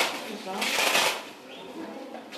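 Clothing rustling in swishes as a coat sleeve is pulled off an elderly woman's arm, with low voices underneath; it eases off after about a second.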